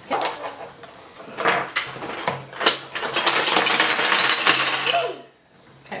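Build or Boom game's toy building blocks being tipped out of the box onto a wooden table: a dense clatter of many small pieces knocking together, building after the first second and stopping about five seconds in.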